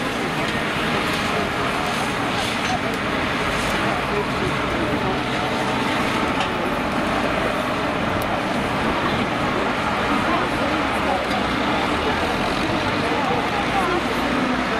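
Farm tractor engine running steadily as it pushes a wrecked banger car, over a continuous background of many voices.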